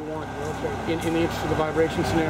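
Concrete pump truck's diesel engine running steadily, with faint voices talking in the background.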